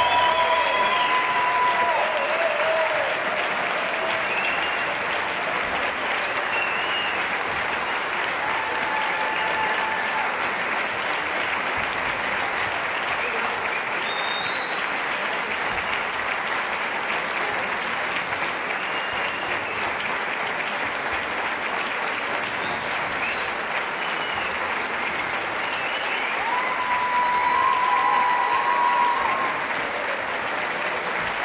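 Audience applauding steadily in a concert hall, swelling a little near the end.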